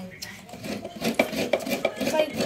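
Short rasping scrapes, several a second and growing more frequent about a second in, as a half coconut is grated by hand over a plastic bowl of grated coconut.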